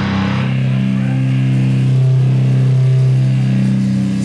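Live rock band with distorted electric guitars and bass. About half a second in, the fuller playing drops away and a low chord is held, ringing steadily.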